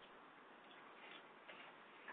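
Near silence: faint, steady hiss of the recording's noise floor.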